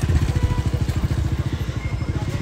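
An engine idling close by, a steady rapid low pulsing.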